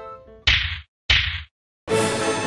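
Two sharp slap-like hits about half a second apart, each cut off abruptly into dead silence. Music starts near the end.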